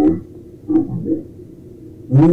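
Two short, muffled fragments of a man's voice, one at the start and one about a second in, too brief to make out words, over a faint steady low background rumble.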